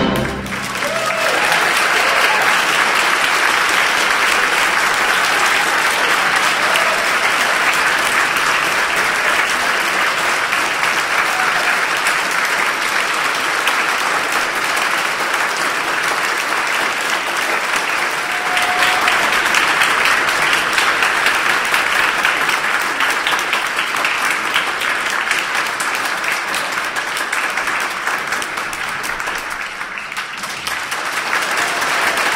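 Audience applause, sustained and even, swelling slightly about two-thirds of the way through.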